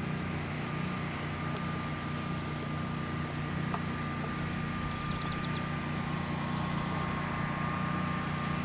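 An engine running steadily with a low, even hum and a faint steady whine above it.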